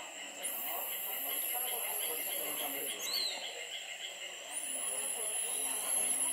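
Tropical forest insects: a steady chorus of high buzzing, joined twice by a very high-pitched insect call that rises in quickly and holds for about two and a half seconds, once soon after the start and again past the middle. Faint voices murmur underneath.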